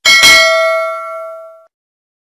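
Notification-bell sound effect: one bell ding that strikes suddenly and rings out with several tones, fading away within about a second and a half.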